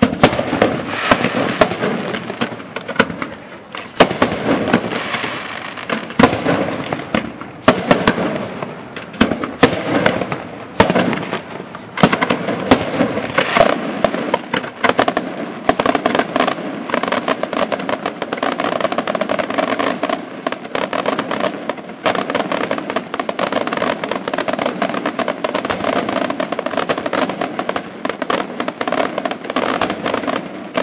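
Fireworks display: aerial shells bursting in sharp reports about once or twice a second, building about halfway through into a dense, continuous crackling barrage.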